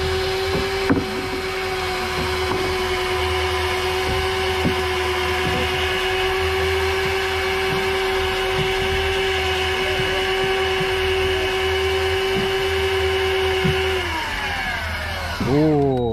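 Shimano Forcemaster electric fishing reel's motor winding in a hooked fish from deep water: one steady whine that holds its pitch, then drops in pitch and winds down about fourteen seconds in as the fish nears the surface.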